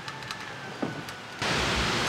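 Faint outdoor background with a few small ticks, then, about one and a half seconds in, a sudden jump to a loud, steady rushing noise.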